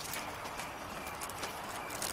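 Night-time garden ambience: crickets chirping in a steady, evenly repeating pattern, with a few light, sharp taps like footsteps on hard ground.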